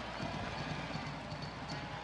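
Ballpark crowd murmur, a steady mix of many overlapping voices and chatter from the stands.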